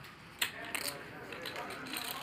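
Low background voices at a poker table, with a sharp click of clay poker chips being handled about half a second in and a few lighter chip ticks after it.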